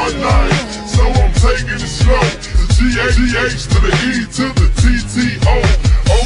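Slowed-and-throwed (chopped and screwed) hip hop track: pitched-down, slowed rapping over deep, repeated bass hits and drums.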